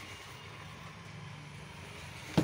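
A faint, steady low drone with no distinct knocks or clicks.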